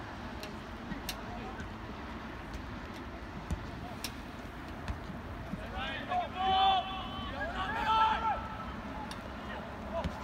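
Open-air sports-field ambience with a few sharp knocks, then people shouting across the soccer pitch from about six seconds in, for two or three seconds.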